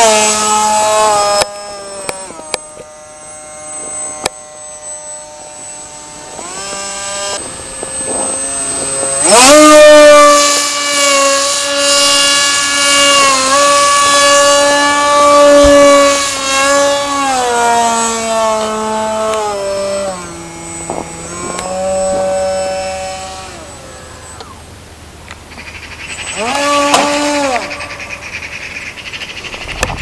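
Whine of a radio-controlled foam AlphaJet model's electric motor in flight, its pitch gliding up and down with the throttle. It is softer for the first several seconds, climbs sharply about nine seconds in and holds high, then eases down, with a brief rise and fall near the end.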